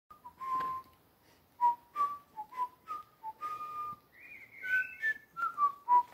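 A person whistling a tune: a string of short, steady notes that step up and down in pitch.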